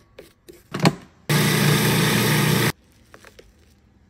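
Electric food processor motor running in one pulse of about a second and a half, its blade chopping molokhia leaves in the plastic bowl; it starts and stops sharply. Before it, light taps and scrapes of a spatula against the side of the bowl.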